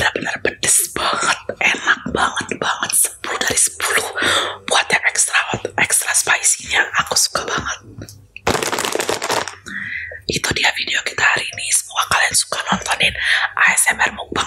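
A woman whispering in Indonesian close to a microphone, ASMR-style, with a long breathy hiss about nine seconds in.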